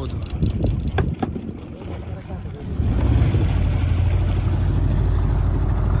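A small fishing boat's outboard motor running on the water, growing markedly louder about three seconds in as the boat speeds up.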